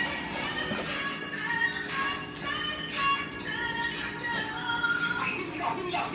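Background music: a melody of held notes that change about every half second.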